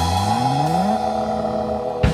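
A live band's held chord ringing out with no drums, while a low note slides upward in pitch over about the first second and then holds. The sound cuts off sharply at the end.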